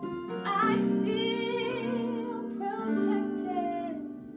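A woman singing held notes with vibrato while accompanying herself with chords on an electronic keyboard. A sung phrase starts about half a second in, and another near the three-second mark.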